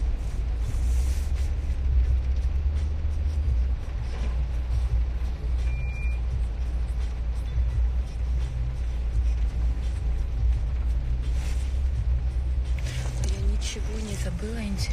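Steady low rumble of a car's interior, with music playing faintly and a short high beep about six seconds in.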